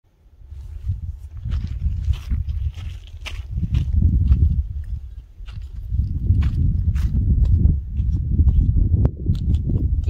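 Wind buffeting the microphone in gusts, with scattered crunches and clicks of footsteps on loose gravel.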